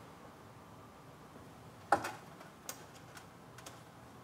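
A sharp click about two seconds in, then a lighter click and a few faint ticks: hands handling the wiring of an opened electric hotplate.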